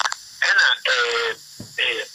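Speech only: a man talking in short phrases with brief pauses.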